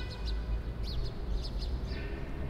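Small birds chirping, several brief high chirps scattered over a low steady outdoor rumble.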